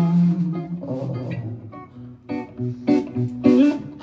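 Live rock band playing a short instrumental stretch between sung lines: electric guitar and bass to the fore. The sound thins out about two seconds in, then short guitar chords and sharp hits come back in.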